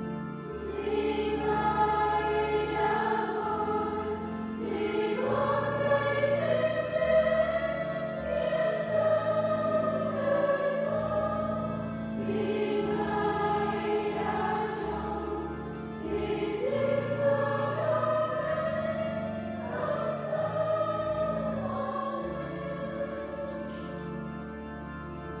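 A choir singing a hymn in long, held phrases over a steady instrumental accompaniment with sustained bass notes: the offertory hymn of a Mass during the preparation of the gifts.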